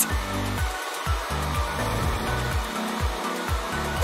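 Handheld hair dryer blowing steadily, over background music with a rhythmic bass line.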